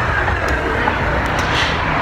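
Steady low rumble and hiss of vehicle noise, with no clear events standing out.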